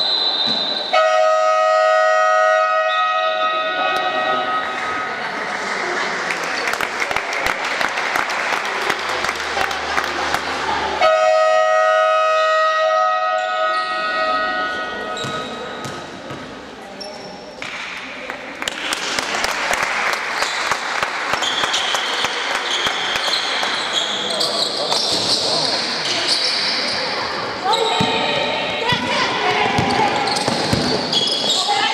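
Sports-hall scoreboard buzzer sounds twice, each time a steady blaring tone of about three seconds: once about a second in, as the game clock runs out to 0:00 and ends the period, and again about ten seconds later. Between and after the blasts come the clatter and bounces of a basketball in the hall.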